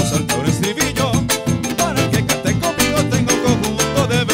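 Gaita zuliana ensemble playing an instrumental passage in a brisk, driving rhythm: maracas, the friction-drum furro and electric bass over steady percussion.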